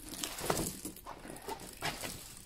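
Rustling and crinkling of the plastic film on a large velvet-backed diamond-painting canvas as it is unrolled and spread by hand, with a couple of sharper crackles.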